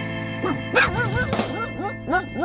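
A small dog yipping over background music: a quick run of short, high barks, about five a second, that starts about half a second in.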